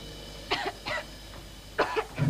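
A girl coughing: two short coughs about half a second and a second in, then another near the end.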